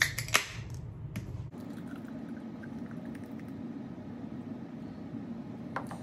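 A beer can cracked open with a couple of sharp clicks, then beer poured steadily from the can into a glass for about four seconds.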